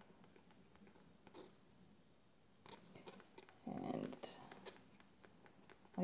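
Near silence with faint scattered ticks and scrapes of a wooden stir stick working thinned acrylic paint in a plastic cup, and a short muffled sound about four seconds in.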